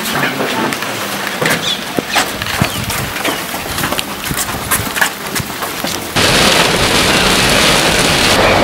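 Short knocks and clatter with voices as a wire animal cage is handled and carried. About six seconds in, this switches suddenly to heavy rain pouring steadily on a car.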